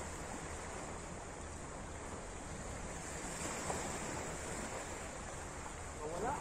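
Steady wind on the microphone and small waves washing against the shoreline rocks.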